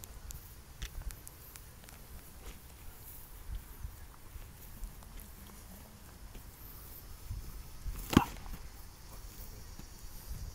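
Low, uneven outdoor rumble with a few faint clicks, and one sharp knock about eight seconds in, by far the loudest sound.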